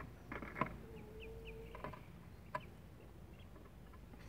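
Newly hatched ducklings giving a few faint peeps about a second in, with soft knocks and rustles as a hand moves among the eggs and chicks in a wooden incubator tray.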